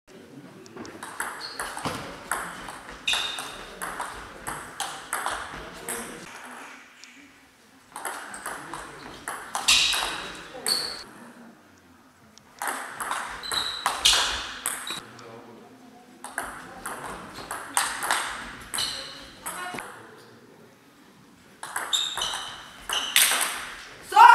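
Table tennis rallies: the celluloid ball clicking off bats and table in quick alternation. There are five rallies of a few seconds each, with short pauses between points.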